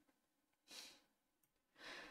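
Near silence with two soft breaths about a second apart, the second just before she speaks again.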